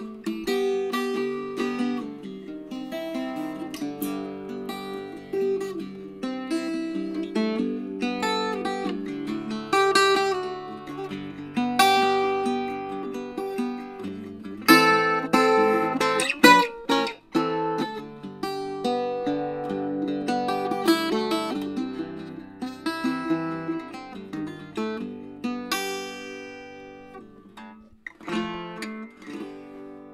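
Weber Big Horn Plus octave mandolin played solo: picked melody notes and strummed chords on its paired steel strings. A few hard strums come about halfway through, and the playing softens near the end.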